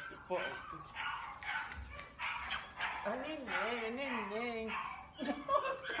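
A pit bull vocalizing with a wavering call that rises and falls in pitch for about two seconds past the middle, mixed with a woman's laughter and shouted "No!".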